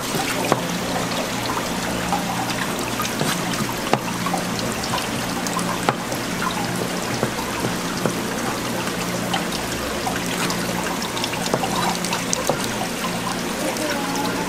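Tap water running steadily onto a cutting board, with a few sharp knocks of a kitchen knife against the board and the abalone shell as an abalone is cleaned and scored.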